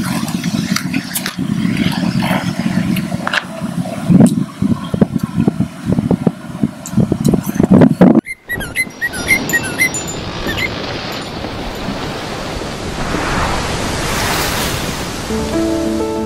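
Wind buffeting an outdoor microphone with a gusty low rumble, broken by handling knocks and rustles. It cuts off sharply about eight seconds in, giving way to a steady hiss that swells toward the end, with a few faint chirps just after the cut.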